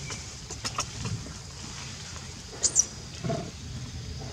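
A baby macaque gives a short, high squeal a little before the end, followed by a lower brief sound. A few sharp clicks come about half a second in.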